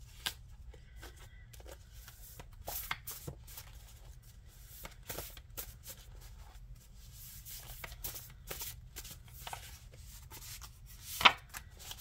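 A deck of oracle message cards being shuffled by hand: faint, irregular flicking and rustling of cards, with a louder snap near the end as a card is set down on the spread.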